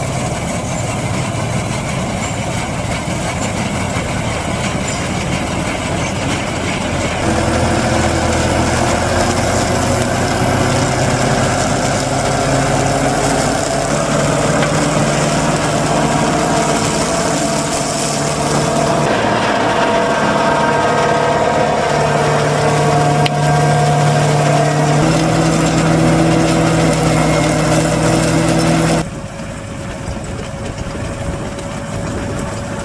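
Diesel engines of farm machinery running steadily: a John Deere 730 combine harvester and a New Holland tractor, then a New Holland tractor driving a flail mower. The engine note changes abruptly several times and drops quieter near the end.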